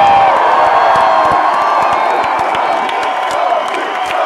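Large concert crowd cheering and whooping loudly, with scattered hand claps from about a second and a half in.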